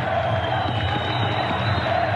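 Football stadium crowd cheering a goal, a steady wash of voices.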